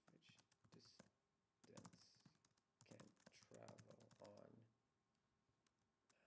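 Faint typing on a computer keyboard, a scatter of light key clicks, with a low voice murmuring quietly in the middle.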